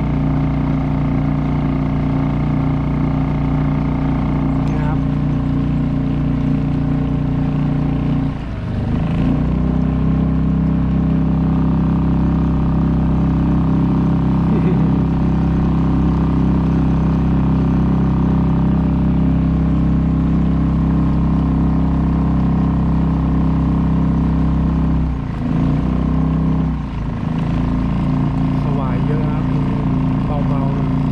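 Suzuki 2.5 hp single-cylinder four-stroke outboard motor running steadily, pushing a small kayak along a canal. The engine note dips briefly about eight seconds in and twice more near the end, then picks up again.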